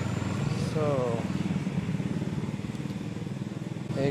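A vehicle engine running steadily close by, with a short bit of a person's voice about a second in.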